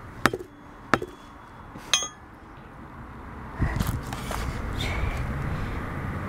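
A steel four-way lug wrench struck three times against a tire at the rim edge, pounding the bead to reseat it and stop a slow bead leak. The third strike rings briefly like metal. A rising rushing noise follows over the last two seconds.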